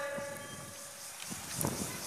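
A man's voice amplified through a public-address system dies away, its echo fading out over about half a second. It leaves faint open-air background noise, with a soft brief rustle near the end.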